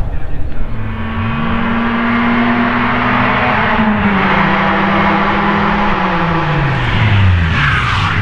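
Opel Astra hatchback race car's engine revving hard: the pitch climbs from about a second in, holds high, then drops away near the end as the revs fall.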